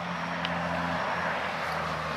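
A steady hiss with a low engine hum underneath, the hum weakening about halfway through.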